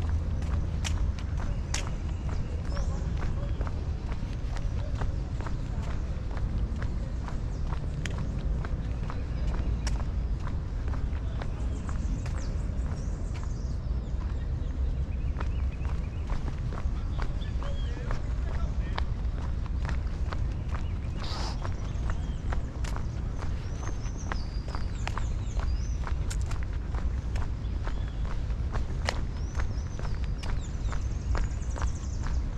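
Footsteps of someone walking on a paved park path, a run of short taps, over a steady low rumble, with a few high chirps now and then.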